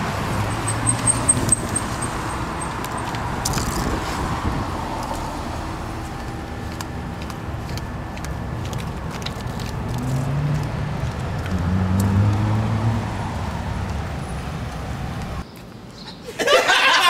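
Road traffic noise, with a vehicle engine rising in pitch about ten to thirteen seconds in. It cuts off suddenly just before the end.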